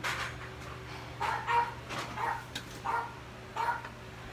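A dog barking a few short times in the background, fairly faint, with pauses between the barks.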